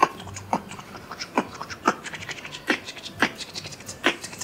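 Beatboxing: a rhythmic pattern of sharp mouth-made percussive hits with breathy sounds between them, about two hits a second.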